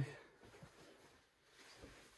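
Near silence: faint background noise, with the last of a spoken word right at the start.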